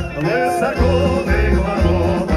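Live amplified concert music through a PA: a vocal ensemble singing over a band with a heavy bass beat. The beat drops out at the start, with sliding sung notes in the gap, and comes back in just under a second later.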